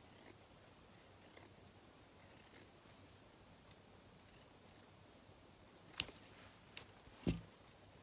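Small embroidery scissors snipping through thin cotton fabric in a few faint, soft cuts, followed near the end by three sharp clicks, the last one the loudest.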